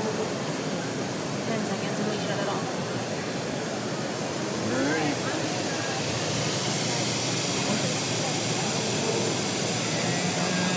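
Two faucets running steadily into tall glass cylinders, one through a 2.2 gallons-per-minute aerator and one through a 1.0 gallons-per-minute low-flow aerator, making a continuous splashing hiss.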